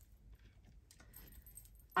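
Faint jingle of a metal chain bracelet on a moving wrist, with light handling of tarot cards on a table. There is a soft click about a second in.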